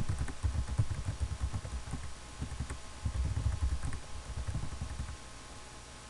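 Computer keyboard typing: irregular runs of key presses, heard mostly as dull low thumps, stopping about five seconds in.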